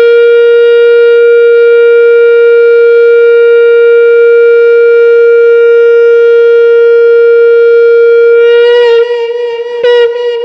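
Conch shell (shankh) blown in one long steady note that breaks off about nine seconds in, followed by a short blast just before the end.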